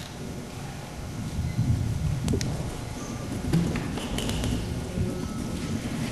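Low rumbling room noise with rustling and a few light knocks picked up on an open microphone, the kind of handling and movement noise made while a speaker steps up to a podium.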